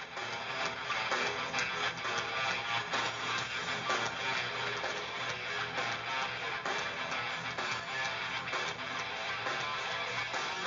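Live rock band playing through a concert PA, with strummed electric guitars and bass in front. The level rises over the first second, then holds steady.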